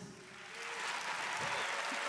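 Audience applauding, the clapping building up over the first second and then holding steady.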